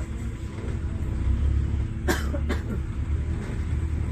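Outdoor street background: a steady low rumble, with two brief sharp sounds a fraction of a second apart about two seconds in.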